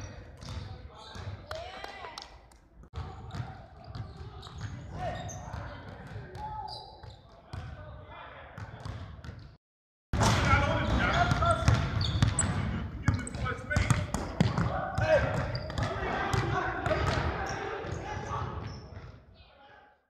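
Basketballs bouncing and being dribbled on a hardwood gym floor, among players' voices. The sound drops out briefly about halfway through and comes back louder.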